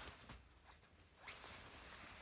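Faint rustling of a fluffy fabric garment being handled and shaken out, with a soft swish at the start and another a little past the middle.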